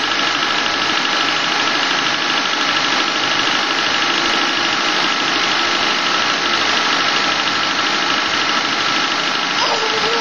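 1997 Honda Civic EX's four-cylinder engine idling steadily, heard close up from the open engine bay, in its first minute after a cold start.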